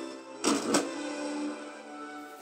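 Radio playing music through a Matsui hi-fi system's speakers, with long held notes; the radio tuner is working.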